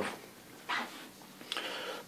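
Faint handling noise: a short soft rustle just under a second in, then a light click and further rustling from about a second and a half in.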